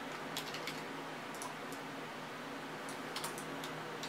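Computer keyboard and mouse clicks, light and scattered in a few small groups, over a faint steady hum.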